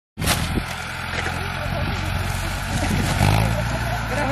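Mahindra Arjun 605 DI tractor's diesel engine running steadily at idle, its low hum growing louder a little after three seconds in, with people talking over it.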